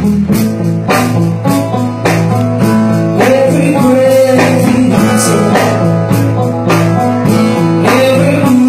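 Live band playing: guitar over a bass line and a steady drum beat.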